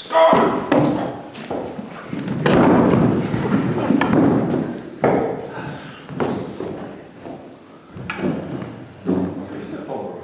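A series of loud, irregular thumps and knocks in a large room, about half a dozen over the span, over a background of indistinct voices.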